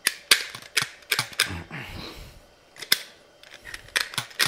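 A hand tool scraping and picking at a Honda S-Wing 125's variator pulley, giving a string of sharp, irregular clicks and short scrapes, with a softer rasp about two seconds in. The metal being scraped off is build-up raised by friction when the variator worked loose.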